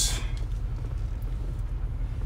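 Low, steady rumble of a Range Rover Sport heard from inside the cabin as it creeps down a steep slope in low-range first gear, held back by engine braking with no brakes applied.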